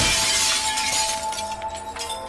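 Glass-shattering sound effect, sudden and loud at the start and fading away over about a second, over a music sting with a held tone.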